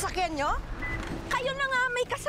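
Women's high voices exclaiming without clear words, broken in the middle by about half a second of hissing noise.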